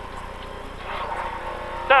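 Lada VFTS rally car's four-cylinder engine running hard under power, with road noise, heard from inside the cabin. The sound grows a little louder about a second in.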